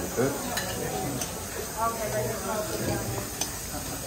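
A metal utensil scooping fish tagine out of a clay tagine onto a ceramic plate, with a few light clicks, over a steady sizzling hiss from tagines cooking on the burners.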